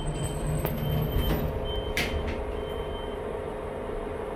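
Passenger lift closing its doors and setting off: a short high beep repeats about once a second over a steady low machine hum, with a sharp knock about two seconds in as the doors shut.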